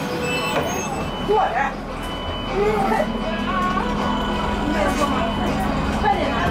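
Cabin of a Skywell NJL6859BEV9 battery-electric city bus under way: a steady low hum and a thin high whine from the electric drive over road rumble, with passengers talking.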